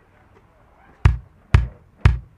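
After about a second of near quiet, a drum beat starts with sharp, evenly spaced hits, two a second, opening the next music track.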